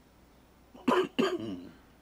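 A person coughing twice in quick succession about a second in, the second cough trailing off into a short throat-clearing sound.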